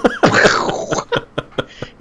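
A man laughing hard: a loud breathy burst of laughter, then a string of short gasping laughs.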